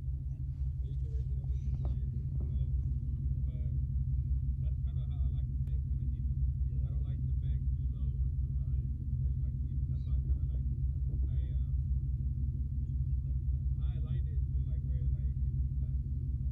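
Ford Mustang GT's two-valve 4.6-litre V8 idling steadily with a deep low rumble, heard from inside the cabin.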